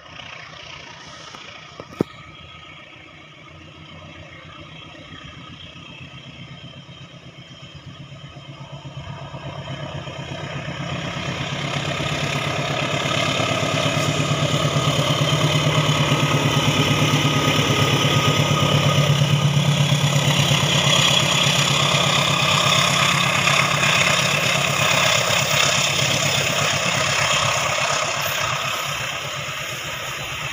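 A box-nose diesel-electric locomotive approaching and passing with its engine running. It grows louder from about eight seconds in, is loudest through the middle, then eases as the passenger carriages roll by near the end. A single sharp click about two seconds in.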